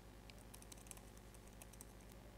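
Faint typing on a computer keyboard: a short run of quick key clicks.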